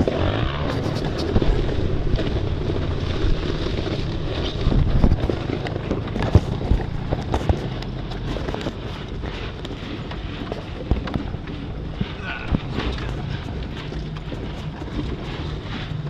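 A 4x4's engine running low and steady as it crawls over rough trail, with frequent knocks and rattles from the body and loose gear as the vehicle bounces.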